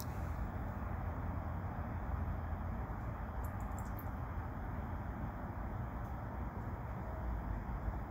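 Steady low rumble and hiss, with a few faint small splashes about halfway through as a bluegill strikes a giant mealworm at the pond's surface.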